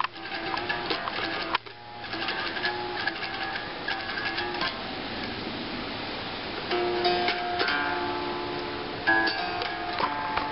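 Electric guitar played by hand in a small room, picked single notes and chords, with a brief break about one and a half seconds in.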